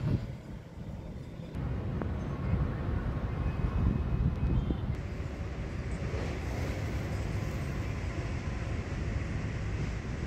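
Low, steady outdoor rumble of open-air ambience, quieter for about the first second and a half, with no voices.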